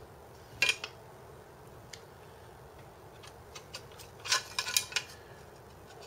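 Light metallic clinks and taps as a metal try square is picked up and set against a corner of the aluminium extrusion frame: a couple of clinks a little over half a second in, a single tick near two seconds, then a quick cluster of clinks between four and five seconds.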